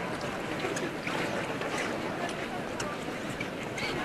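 Crowd of people talking at once, a steady, dense chatter of many voices with no single voice standing out, inside a large church.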